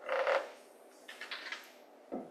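A handheld eraser rubbing chalk off a chalkboard in several wiping strokes: one stronger stroke at the start, then a quicker run of shorter strokes about a second in.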